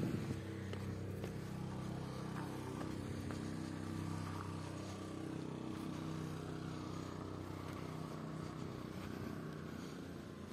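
A motor vehicle engine running with a steady low hum that wavers slightly in pitch.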